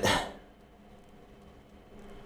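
A short burst of noise that fades within the first half-second, then quiet room tone with a faint steady hum.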